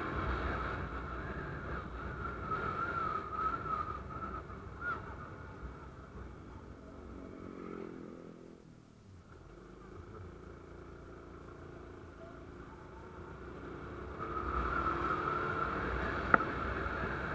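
Honda Wave 125's single-cylinder four-stroke engine running under way, with road and wind noise. It quietens as the bike eases off and slows about halfway through, then picks up again near the end.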